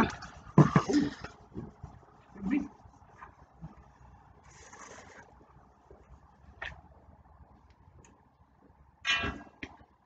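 Short, scattered voice sounds from a person, in the first second and again near the end. In between it is mostly quiet, with a brief hiss about five seconds in and a single light click.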